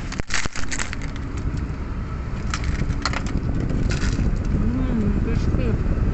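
Steady low rumble of a car running, with a burst of crackling, rustling handling noise in the first second and a few more short crackles later.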